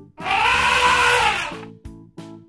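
An elephant trumpeting sound effect: one loud call of just over a second whose pitch rises and falls back, over light background music.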